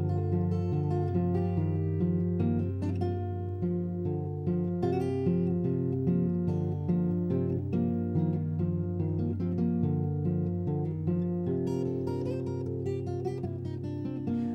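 Acoustic guitar fingerpicked with a capo on the neck, playing a steady rolling pattern of single plucked notes with no singing.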